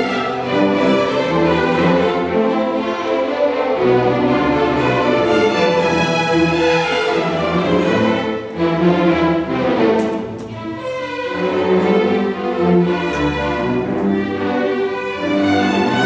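String orchestra playing a tango, the violins bowing together.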